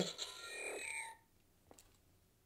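Hasbro Iron Man Arc FX toy glove playing its electronic repulsor sound effect from its small built-in speaker, with high steady electronic tones. The sound cuts off about a second in, and a faint click follows.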